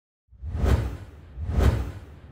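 Two whoosh sound effects of a logo intro, each swelling and fading with a deep rumble beneath. The first peaks just under a second in, the second near the end.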